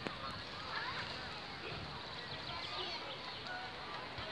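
Faint outdoor background of distant voices and bird calls, with short chirping calls about a second in and again near the end.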